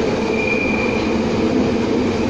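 Inside a moving train carriage: the steady rumble and rattle of the running train, with a brief high squeal of the wheels about half a second in.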